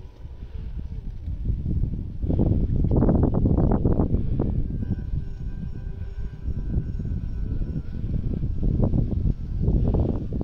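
Wind rumbling and buffeting on a phone microphone, strongest a couple of seconds in and again near the end, with faint music playing underneath.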